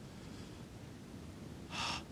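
Faint room tone, then a man's short intake of breath near the end, drawn just before he speaks again.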